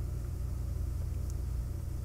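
Steady low rumble and hum of background noise picked up by the microphone, with no other distinct sound.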